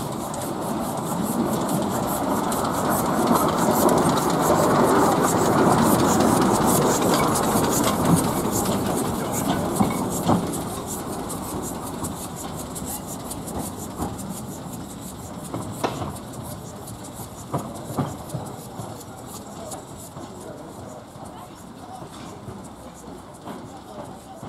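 Small narrow-gauge steam locomotive running past and away, loudest in the first several seconds and then fading steadily as it recedes, with a few sharp clicks in the second half.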